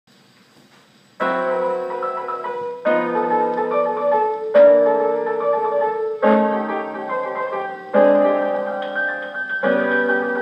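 Piano duet fox trot medley from a Parlophone 78 rpm shellac record, played acoustically through a 1926 Victor Credenza Orthophonic Victrola with a medium tone needle. Faint surface noise comes first; about a second in, the pianos enter with strong chords every second and a half or so, with little deep bass.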